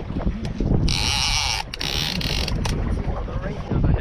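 Wind and choppy water around a small boat, a steady low rumble with wind on the microphone, broken by two short high hissing bursts about one and two seconds in.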